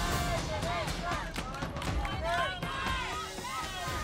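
Voices calling out, fainter than the commentary around them, over background music.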